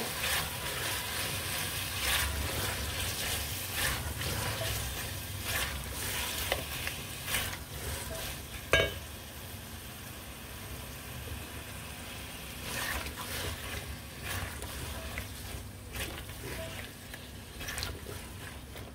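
Bottle gourd cubes frying in masala in an aluminium pot while being stirred with a silicone spatula: a steady low sizzle with scattered scrapes and knocks of the spatula against the pot, one sharper knock about nine seconds in. This is the bhuna stage, where the gourd is fried in the spices for a couple of minutes.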